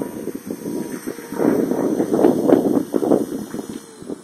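Wind buffeting the microphone in uneven gusts, with the electric motor and rotor of a 450-size RC helicopter running underneath as it comes down onto the grass.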